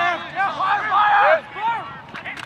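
Several voices shouting over one another in short, overlapping calls, loudest around the middle.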